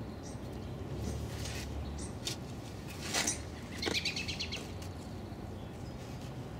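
A spade digging and levering in garden soil to loosen salsify roots, with a few scraping crunches, and birds chirping in the background.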